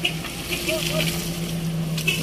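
Small pickup truck's engine running at a steady, unchanging pitch as the truck rolls slowly past close by, just freed from deep mud.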